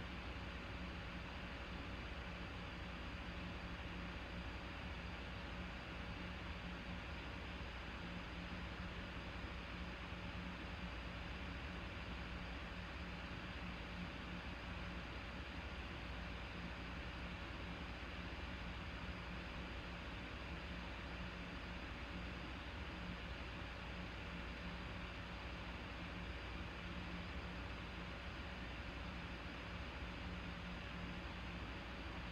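Faint, steady hiss with a low hum underneath: background room tone, with no distinct sounds.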